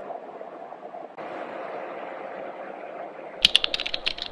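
Steady rushing drone of the aircraft cabin inside an aerial refuelling tanker's boom pod. Near the end, a rapid run of about ten sharp clicks in a second.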